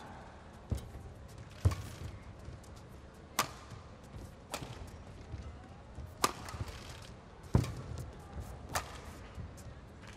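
A badminton rally: a feather shuttlecock is struck back and forth with rackets in long, deep clears. About seven sharp hits ring out, a second or two apart.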